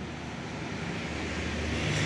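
A vehicle engine running: a low, steady drone that grows gradually louder.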